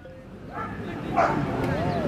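A dog making short whining sounds that rise and fall, with people talking nearby.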